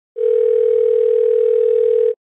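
One steady electronic tone at a single mid pitch, starting a moment in and held evenly, like a dial tone or test beep.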